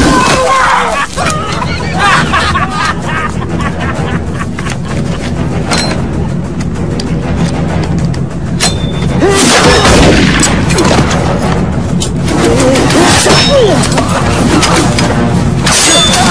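Action-film soundtrack: music with a steady low pulse, mixed with a run of sharp hits, crashes and bangs, which are busiest in the second half.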